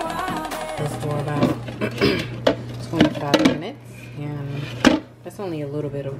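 Background music stops about a second in. Then come several sharp clatters of kitchen dishes and containers being handled over a steady low hum, and a woman's voice starts near the end.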